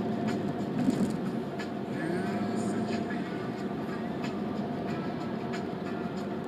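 Steady engine and road noise heard from inside a moving taxi, with a constant hum and faint, evenly spaced clicks about every two-thirds of a second.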